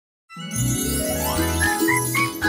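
Silence for a moment, then a cartoon title tune starts abruptly about a third of a second in: bright jingling and tinkling over a rising run of notes and a repeated bass line.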